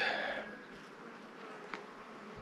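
Honeybees flying close by: a faint, steady buzz.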